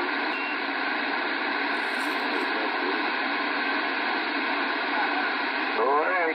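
Two-way radio receiver hissing with steady static between transmissions, the band cut off above and below like a voice channel, with faint traces of a weak station's voice in it in places.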